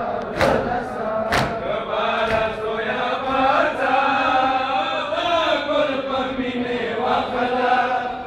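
Men beating their chests in unison in matam, a sharp slap about once a second for the first second and a half, then men's voices chanting a nauha mourning lament in long, held phrases.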